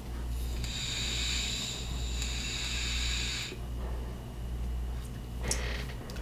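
Horizon Tech Arctic sub-ohm vape tank hissing for about three seconds as air is drawn through it while the coil fires at around 60 watts, followed near the end by a short breathy exhale.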